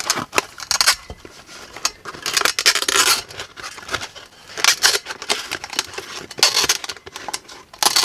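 Utility knife slicing through a 10-inch woofer's fabric spider and paper cone, and the cone tearing as it is ripped away from the voice coil. There are about five separate scraping, tearing bursts with short pauses between them.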